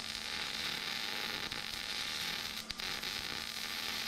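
MIG welding arc crackling steadily as a bead is run joining a mild-steel axle tube to a preheated cast-steel axle housing.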